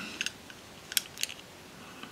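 A handful of short, light metallic clicks and taps as a metal viewfinder attachment is handled against the body of a Bolex B8 8mm cine camera, the sharpest click about a second in.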